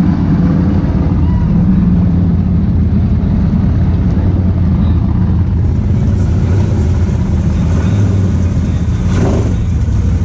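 Can-Am side-by-side's engine running steadily at parade speed, heard from a camera mounted on the vehicle. A short rush of noise comes near the end.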